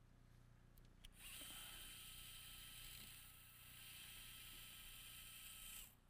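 Surgical power drill running a drill bit through a drill guide into the tibia to make the hole for a knotless suture anchor. A faint, steady high whine starts about a second in, dips briefly midway and stops just before the end.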